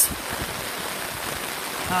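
Torrential rain falling with running floodwater, a steady even hiss.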